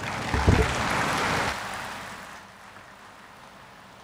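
Audience applauding at the end of a speech. The clapping dies away over about two seconds, with a couple of low thumps near the start.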